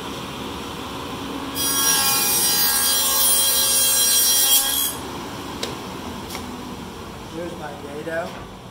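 SawStop table saw running with a Freud 8-inch dado stack. About one and a half seconds in, a board is pushed over the low-set stack and it cuts a shallow dado for about three seconds, much louder and brighter than the idle run. The saw then runs on unloaded.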